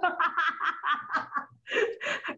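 Hearty laughter: a quick run of short laugh pulses, a brief pause, then a louder laugh near the end.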